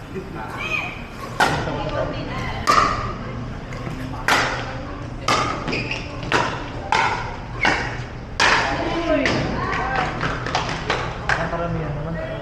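Pickleball rally: paddles striking the hard plastic ball back and forth, a string of sharp pops about a second apart that come quicker near the end, each echoing in a large indoor hall.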